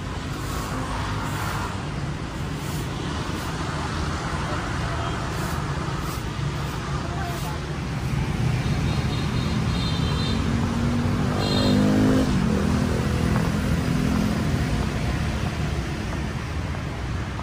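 Steady road-traffic rumble. A motor vehicle passes louder about eleven to twelve seconds in, its engine note rising and then falling as it goes by.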